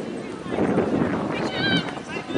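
Distant high-pitched shouts and calls from the field hockey pitch, with a loud rushing noise swelling through the middle.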